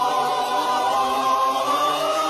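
Many voices singing together on long held notes, like a choir.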